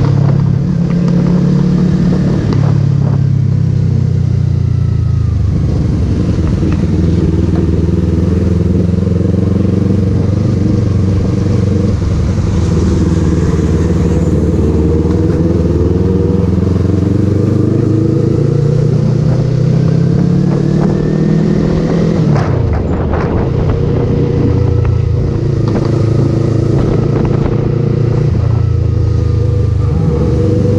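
Yamaha sport motorcycle's engine running under way, close to the handlebar-mounted camera. Its pitch rises and falls with the throttle and dips sharply about two-thirds of the way through before climbing again.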